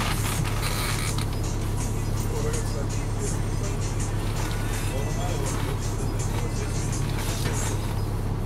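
The Caterpillar C9 diesel engine of an articulated transit bus idling steadily while the bus stands at the curb, heard from inside the cabin as a constant low hum. Indistinct voices and music sound in the background.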